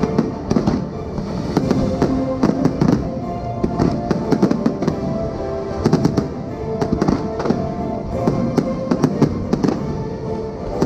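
Aerial fireworks shells bursting in dense, irregular volleys of bangs and crackles, with the show's music playing steadily underneath.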